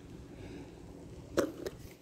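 Faint crunching of street cats chewing scattered dry cat food, with a brief short vocal sound about one and a half seconds in.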